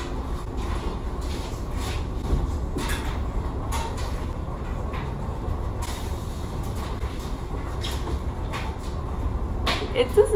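Clothes rustling and brushing in short bursts as they are pulled out of a stacked dryer and handled, over a steady low machine rumble.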